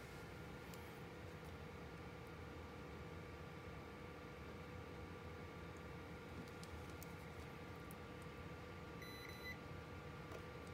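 Quiet room tone with a faint steady electrical hum and whine. A few faint clicks come around the seventh second, and a short electronic beep sounds about nine seconds in.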